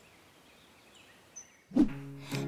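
A break in the background music: near silence with a few faint, high bird-like chirps, then a loud pitched sound starts near the end as the music comes back in.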